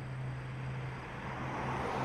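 A car driving past on a road, its tyre and engine noise swelling as it comes close near the end, over a steady low hum.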